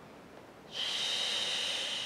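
A woman's long, forceful 'shh' pushed out through the mouth, starting under a second in and lasting about a second and a half. It is the Pilates effort-on-the-exhale breath, made with resistance to push the air out.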